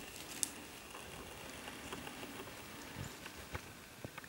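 Faint footsteps and rustling on a mossy, leaf-strewn forest floor, with a light click about half a second in and another near the end.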